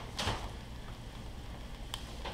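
A short rustling swish about a quarter second in and a faint click near the end, over a low steady hum: kitchen handling noise.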